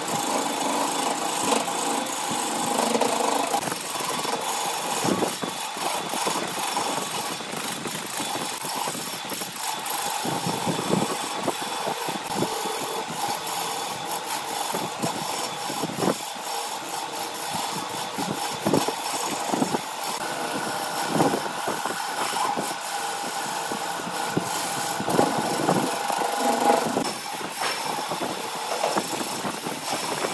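BURT wood lathe running with a gouge cutting a spinning blank of wood and resin: a steady machine hum under continuous scraping, with frequent short clicks as the tool meets the uneven surface.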